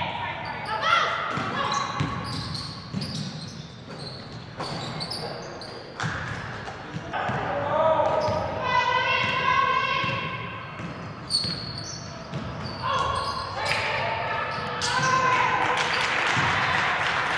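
A basketball bouncing repeatedly on a hardwood gym floor in a large echoing hall, under indistinct shouting voices that are loudest in the middle.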